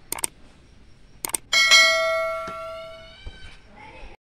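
Subscribe-button sound effect: two quick pairs of mouse clicks, then a bell chime that rings out loudly and fades over about two seconds.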